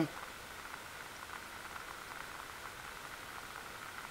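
Water in a metal pot over a methanol alcohol stove, just short of a full boil at about 210°F: a faint steady hiss with a continuous patter of small bubbling ticks.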